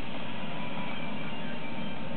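Steady background hiss with a faint steady tone in it, even throughout, with no clicks or knocks.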